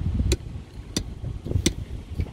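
Wind buffeting the microphone as an uneven low rumble, with three sharp clicks about two-thirds of a second apart.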